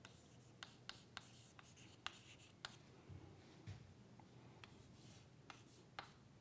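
Chalk writing on a chalkboard, faint: light scratchy strokes broken by a series of sharp little taps as the chalk strikes the board.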